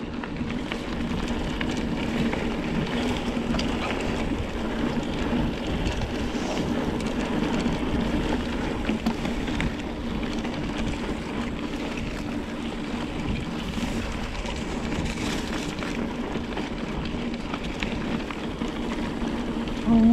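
Mountain bike riding over a rough dirt singletrack: continuous rumbling and rattling from the tyres and bike, with wind noise on the camera microphone and a steady low hum underneath.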